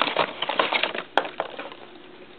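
Plastic and cardboard action-figure packaging crinkling and rustling as it is opened by hand, with one sharp click about a second in.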